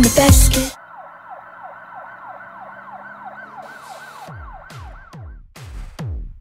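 Electronic dance music cuts off sharply. A quieter warbling synth tone follows, sweeping rapidly up and down several times a second like a siren. From about four seconds in, a run of quickly falling synth sweeps takes over and grows louder.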